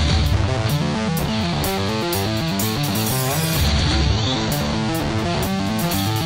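Instrumental rock music from a guitar, bass and drums trio: an electric guitar plays a quick riff of picked notes over a bass guitar line and a steady drum beat with cymbals, with no vocals.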